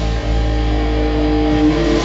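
Live rock band holding a sustained chord: distorted electric guitar and a low bass note ring out steadily, and the bass note stops right at the end.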